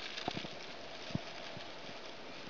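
Handling of a plastic solar-still bag as it is taken off a tree limb: a few soft knocks, the loudest just past a second in, over a steady outdoor hiss.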